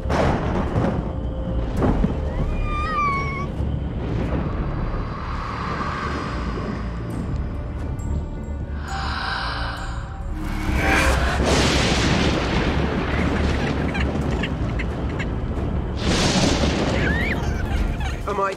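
Dark, dramatic TV score with deep booms and swelling rushes of storm-like noise, which surge a few times, loudest from about eleven seconds in and again near the end.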